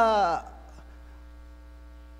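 A man's voice trails off just after the start, then a faint, steady electrical hum with several unchanging tones fills the pause: mains hum from the microphone and sound system.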